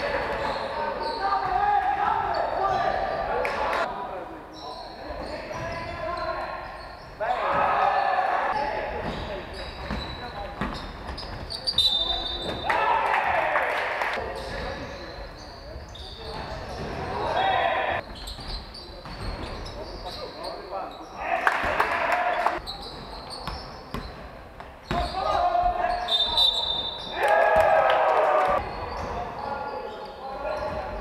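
A basketball game in a large hall: a ball bouncing on the wooden court and players' feet, with players' voices calling out in short spells, all echoing.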